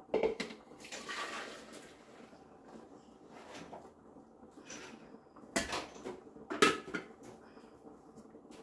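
Clinks and knocks of a stainless steel cup and a plastic blender jug being handled, with juice poured from one into the other. A sharp knock comes at the start, and the two loudest knocks come about a second apart after the middle.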